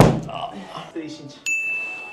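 A punch from a boxing glove thuds into a handheld striking pad right at the start, the loudest sound here. About a second and a half in, a bright 'ding' sound effect sets in as a single held high tone.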